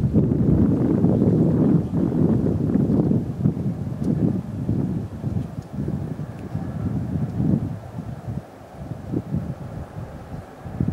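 Wind buffeting the microphone in irregular gusts over the distant rumble of a four-engine turboprop aircraft landing. It is loudest in the first two seconds and then eases off.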